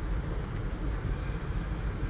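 Steady room tone: a low, even hum and hiss picked up by the podium microphones during a pause in speech.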